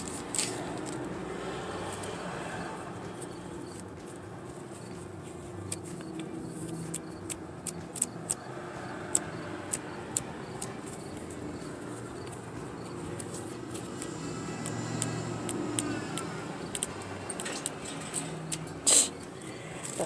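Light irregular clicks and crinkles of a small paper flip book and its wrapper being opened and handled, with a louder rustle near the end, over a low steady hum.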